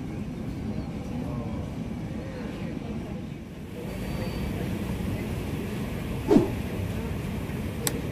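Indistinct chatter of passengers over a steady low rumble. About six seconds in there is one short, loud sound that drops quickly in pitch, and near the end a sharp click.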